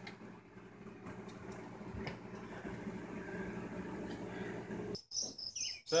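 Low, steady buzzing hum of a crowded honey bee colony in a glass observation hive. It cuts off about five seconds in, and a high, pulsing insect chirping takes over.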